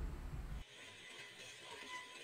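Background music cuts off abruptly about half a second in, leaving a faint steady hiss.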